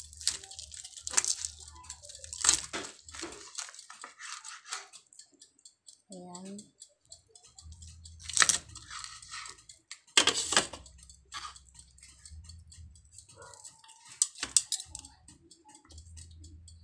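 A knife and fork cutting up a whole roasted chicken on a plastic cutting board: irregular clicks, scrapes and tearing as the blade and fork work through skin and meat and hit the board, with sharper knocks about eight and ten seconds in.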